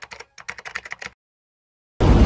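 Computer keyboard typing sound effect: a quick run of key clicks that stops just over a second in.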